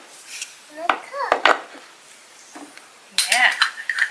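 A few light clicks and knocks about a second in as small toy ice cream counter pieces are picked up and set down.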